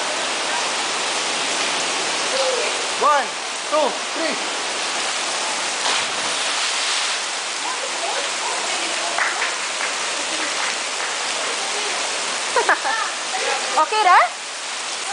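Steady rush of falling water into a rock pool. About six seconds in, a short splash as a person jumps into the pool, with short shouted voices before and after.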